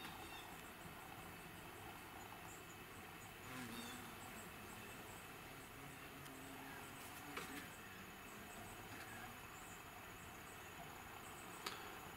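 Faint background hiss with soft, high-pitched chirps repeating unevenly, as from a distant insect, and a couple of faint brief knocks.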